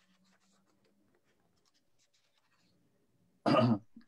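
Near silence: faint room tone of a video-conference call. Near the end comes one short, loud vocal sound, a cough or the first syllable of speech.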